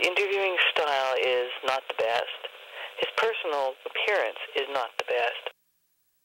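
A person's voice speaking with a thin, telephone-like sound, cut off suddenly shortly before the end.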